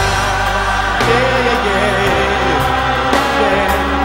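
Gospel choir singing together with a soloist, holding long notes.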